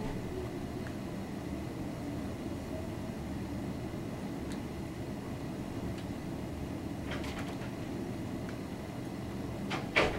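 A blade paring a thick toe callus, heard as a few short, faint scrapes over a steady low background rumble, with a sharp click at the very end.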